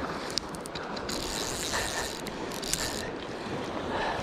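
Fly reel's click-and-pawl drag ratcheting in quick runs as a hooked sockeye salmon fights the line, densest from about one to three seconds in, over the steady noise of the river. The fish is foul-hooked in the dorsal fin, which makes it pull hard.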